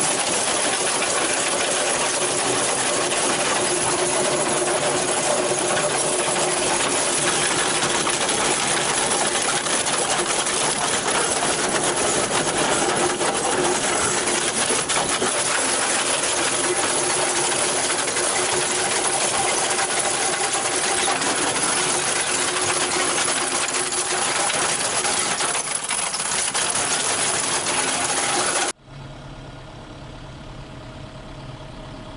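Simex TFC 400 drum cutter head on an excavator milling tuff rock: a loud, steady grinding clatter of its pick teeth cutting stone. About a second before the end it cuts off abruptly to a much quieter low hum.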